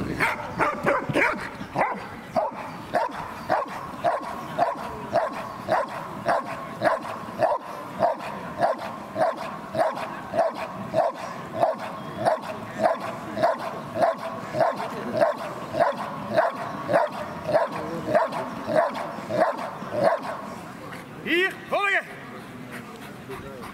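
Belgian Malinois barking steadily at a helper in a bite suit, about two barks a second: the hold-and-bark guarding of protection-dog work. The barking stops about a second and a half before the end.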